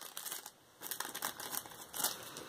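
Plastic wrapping crinkling in the hands in short irregular bursts, with a brief pause about half a second in.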